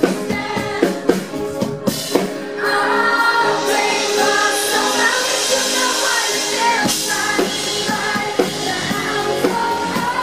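Live pop band performance: a woman singing into a microphone over a band with drums. The arrangement fills out and gets denser from about two and a half seconds in until about seven seconds in.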